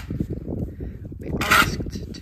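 A long-handled tool scraping and digging into old sheep manure on a barn floor, with irregular crunching throughout and one sharper, louder scrape about one and a half seconds in.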